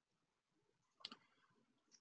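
Near silence, with one faint, short double click about a second in: a computer mouse button.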